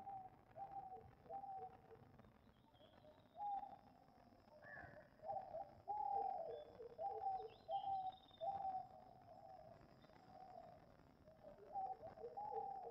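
Faint birdsong: a long run of short calls, each dropping a step in pitch, repeated irregularly about once a second, with a few faint high chirps in between.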